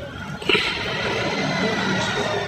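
Gas stove burner flame hissing steadily, growing louder about half a second in as the pot's foil broth-packet patch is held in the flame to heat it onto the leak.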